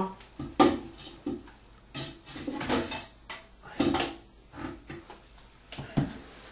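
Plastic toilet flush-valve parts being handled: a string of irregular knocks, taps and rattles as the pieces are picked up and bumped against each other and the work surface.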